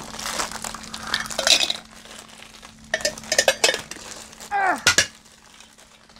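Small metal cans and lids clinking and clattering as they are handled and set down on a table, in a few short runs of clinks, with a short falling vocal sound about five seconds in.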